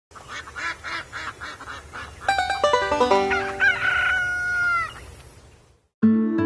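A rooster crowing: a long call whose final note is held and falls away near the end, after about two seconds of rapid, evenly repeated clucking. A quick rising run of musical notes sounds under the start of the crow, and the whole fades out just before the end.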